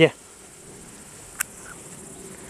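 Insects in a summer meadow chirring steadily, a faint high-pitched pulsing buzz, with a single brief click about one and a half seconds in.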